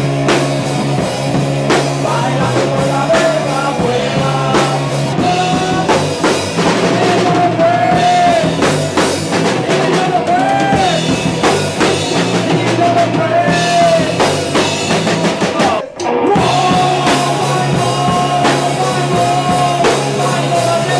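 Live rock band playing a song: drum kit and amplified guitars with a male singer on a microphone. The sound drops out for a moment about sixteen seconds in.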